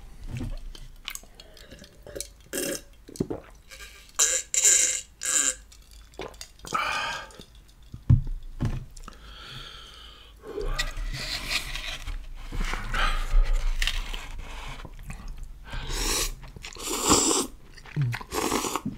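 Close-miked eating: kimchi noodle soup slurped and chewed from a cup with chopsticks, in irregular bursts with pauses between.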